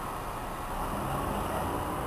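City bus approaching along a wet street, its engine growing louder, with a low engine hum setting in about a second in.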